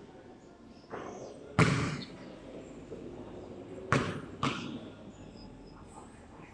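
A basketball thudding after a jump shot: four hits, the loudest about one and a half seconds in and two more close together around four seconds, as the ball meets the hoop and bounces on the concrete court, each hit echoing briefly under the metal roof.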